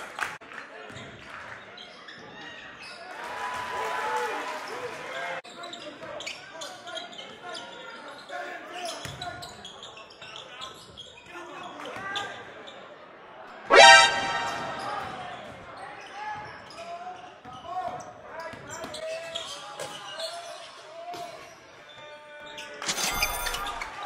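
Live basketball game sound in a gymnasium: the ball bouncing on the court amid voices of players and spectators. About 14 seconds in, a sudden loud pitched sound stands out above the rest.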